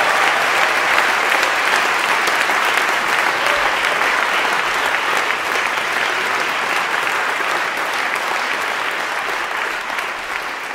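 Concert audience applauding at the end of a song, steady at first and slowly dying down.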